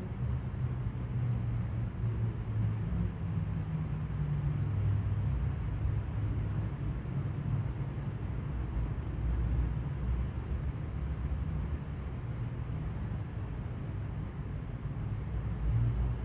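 Steady low background rumble with no speech, heavy in the bass and wavering slightly in level.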